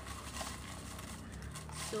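Folded paper slips rustling and shuffling as a hand stirs them inside a small wooden box, with a few light, irregular knocks against the wood.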